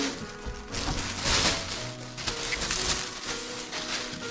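A plastic carrier bag rustling as it is handled, loudest about a second in, over background music.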